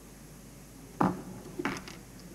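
Handling noise close to the microphone as the EEG cap is taken off and set down: a sudden thump about a second in, then a brief clatter.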